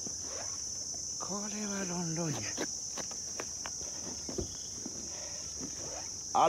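A steady, high-pitched insect chorus. A man's short voiced sound falls in pitch from about one to two and a half seconds in, and a few light clicks are heard.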